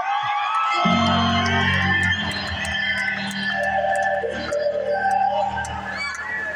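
Live rock band music heard from far back in an arena; a deep, sustained low chord comes in about a second in and holds under guitar tones above it.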